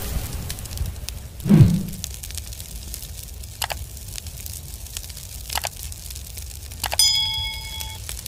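Channel-animation sound effects over a low rumbling bed: a whoosh about one and a half seconds in, two sharp clicks, then a click and a ringing notification-bell chime near the end as the subscribe button is pressed.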